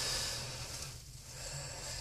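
A man's breath, a soft hiss that fades over about a second, in a pause between sentences, over a steady low hum in a car cabin.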